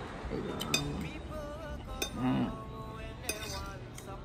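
Metal forks clinking and scraping on ceramic dinner plates, with a few sharp clinks, over background music.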